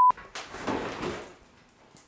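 A single steady beep at one pitch, a censor bleep, cuts off sharply just after the start. It is followed by about a second of soft rustling noise that fades away to near silence.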